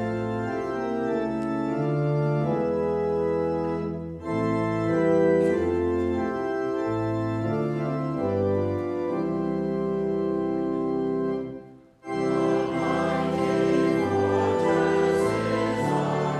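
Church organ playing a slow hymn in held chords that change every second or so. There is a short dip about four seconds in and a brief full stop near the end before the music resumes.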